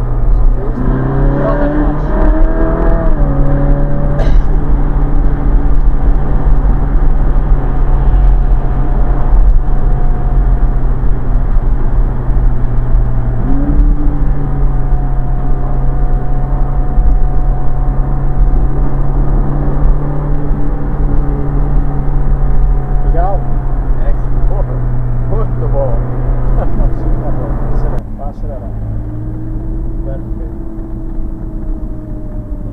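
Ferrari 458 Spider's V8 engine running under way, heard from the open cockpit with the top down and wind noise. The engine note rises about a second in as it revs, holds steady, steps up in pitch about halfway through and drops lower near the end.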